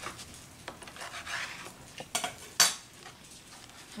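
A knife sawing through a tortilla-wrapped burrito on a plastic cutting board, with soft scraping and light clicks of the blade on the board, then two sharp knocks a little past halfway.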